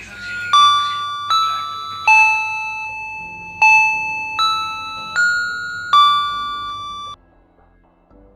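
Electronic musical doorbell playing a seven-note chime tune, each note struck and fading, stopping abruptly about seven seconds in.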